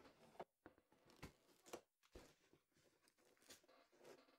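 Near silence, broken by about half a dozen faint, short clicks and rustles of cardboard packaging being handled inside a shipping box.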